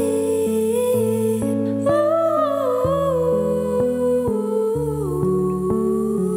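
Electro-pop band playing a slow passage without drums: low bass notes change about every half second under a held, wavering melody line.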